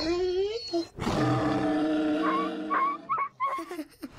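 Bulldog howling: a cry that rises in pitch over the first second, then a long held call, breaking into a few short wavering cries near the end.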